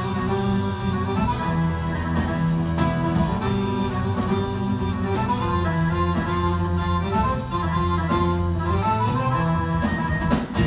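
Live acoustic ensemble music: acoustic guitars and an accordion play over percussion, with long held low notes under a moving melody.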